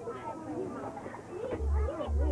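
Several children's voices chattering and talking over one another, no single speaker clear. A deep rumble on the microphone starts about one and a half seconds in.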